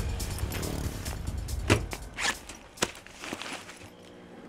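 A backpack being handled and opened on a car bonnet: rustling, a zip, and a few sharp clicks. Soft background music is under it, and a low rumble fades out over the first half.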